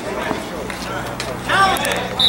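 Spectators' voices beside a dek hockey rink: indistinct talking, with a louder call near the end.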